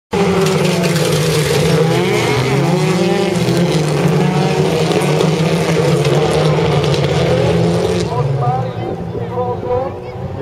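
A pack of folkrace cars' engines at full throttle as they race off together, with pitches rising and falling as the drivers rev and change gear. The sound drops away about eight seconds in as the cars pull off into the distance.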